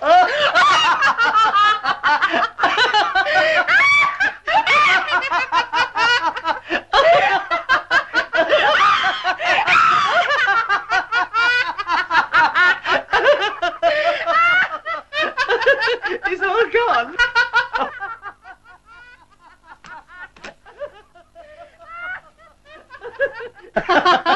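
Long bout of human laughter, giggling and snickering, loud and continuous, which dies away to faint sounds about 18 seconds in.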